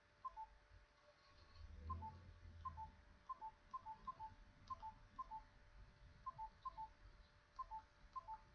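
Mobile phone alerting to an incoming SMS, the payment confirmation: faint, short two-note beeps, each a higher note falling to a slightly lower one, repeated at irregular intervals. A brief low hum comes about two seconds in.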